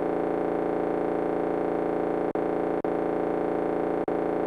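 A single held synthesizer tone, rich in overtones, sustained without drums, broken by two brief dropouts a little past two seconds and just under three seconds in.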